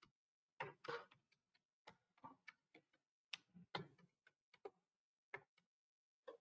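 Faint computer keyboard keystrokes, irregular clicks singly and in quick pairs, as numbers are typed in and entered one cell after another.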